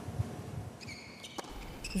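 Faint sound from a tennis match: a few short high squeaks around the middle and a single sharp hit about a second and a half in, over a low hum.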